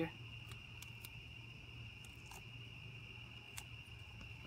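A steady cricket trill, with a few faint crinkles and clicks of duct tape being pressed and wrapped over the end of a tube.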